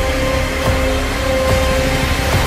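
Film battle sound effects: a dense wash of explosions and gunfire with a few sharp impacts, over a held note of the trailer's score.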